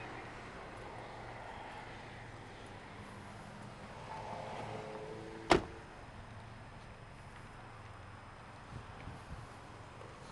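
A car door of a 2008 Hyundai Accent sedan being shut once with a sharp thud about halfway through, the loudest sound here, over a faint steady low hum.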